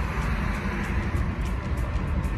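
Wind rushing into a moving car through open windows, buffeting the phone's microphone, over road noise. Music plays underneath.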